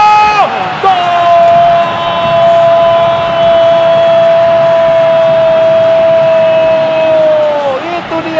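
TV football commentator's long drawn-out goal shout: one note held on a steady pitch for about seven seconds after a brief first cry, falling away at the end, over stadium crowd noise.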